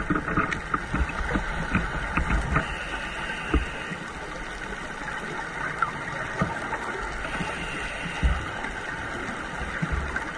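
Underwater sound through a camera housing: scuba divers' regulator breathing and exhaled bubbles, with low rumbling bursts of bubbles twice, over a steady hiss and many scattered clicks.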